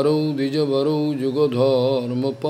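A man's voice chanting a Sanskrit prayer verse in a slow, drawn-out melody. He holds long notes with a wavering pitch, broken by a few short breaths.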